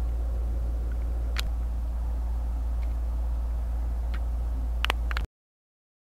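A steady low rumble of room or background noise, with a few faint clicks, that cuts off suddenly a little after five seconds in, leaving dead silence.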